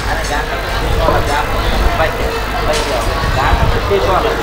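A man's voice through the hall's microphone and loudspeakers, in short phrases, over a steady low rumble.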